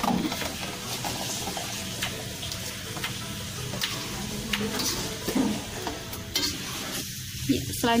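A spatula stirring corn and carrots into vegetables cooking in a wok, with short scrapes and clicks against the pan over a steady hiss from the hot pan.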